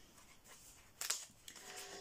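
Quiet room with one brief paper rustle about a second in, a notebook being handled and leafed through. A faint steady hum starts near the end.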